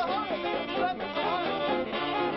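A saxophone group playing a jazz tune live, several saxophones together, with a voice over the music.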